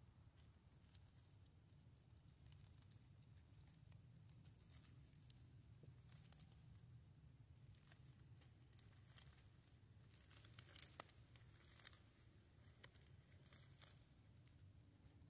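Near silence: faint still night air with a low hum and a few small clicks and crackles, mostly in the second half.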